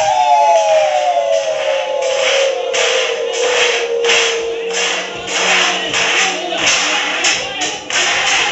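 Live band music: a long held note slides slowly down in pitch over the first half, while a quick, even beat of sharp hits, about three a second, runs through the second half.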